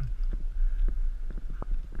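Mountain bike rolling over a bumpy hard-packed gravel trail, picked up by an on-board GoPro: a steady low rumble with scattered small knocks and rattles.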